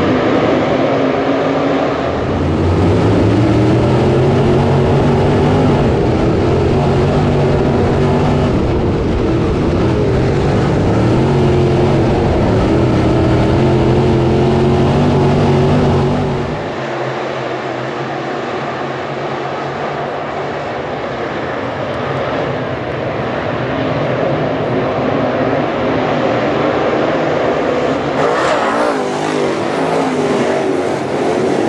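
A pack of crate-engine dirt late model race cars running on a dirt oval, their engines rising and falling in pitch as they accelerate out of the turns. About sixteen seconds in, the sound drops to a quieter, more distant engine drone.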